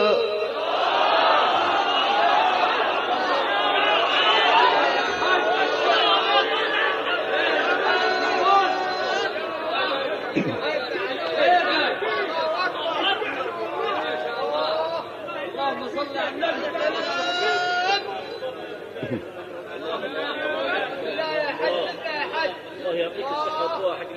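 A crowd of listeners at a live Quran recitation calling out and chattering in many overlapping voices, the audience's acclaim after a recited verse. It grows somewhat thinner in the second half.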